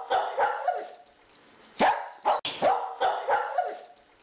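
A dog barking and yipping repeatedly in quick succession, loudest about two seconds in.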